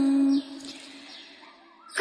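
A chanted verse line ends on a held sung note that stops about half a second in, followed by a brief quiet pause with a faint fading tail before the next sung line begins at the very end.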